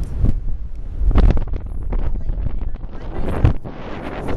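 Wind buffeting the microphone on an open sailing yacht: a loud, uneven low rumble that rises and falls in gusts.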